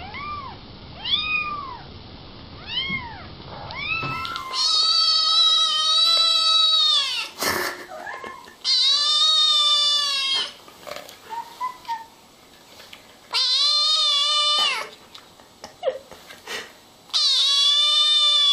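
Kittens meowing: first a small kitten's short mews that rise and fall, about one a second; then another kitten's long, loud meows, four of them, each held for one to two and a half seconds.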